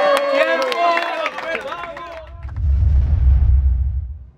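Crowd shouting and cheering, with a few claps, for about two seconds after a rap battle's time is called. Then a deep rumbling boom of a logo sting swells and holds.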